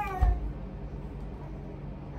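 An infant's drawn-out, wavering cry-like call, falling and rising in pitch, trailing off about half a second in, with a dull thump as it ends; after that only a low steady hum.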